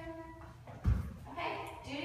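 A voice speaking, broken by one low thump about a second in, over a steady low hum.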